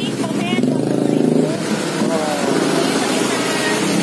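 Motor vehicle engine noise from road traffic, a steady hum under brief snatches of speech.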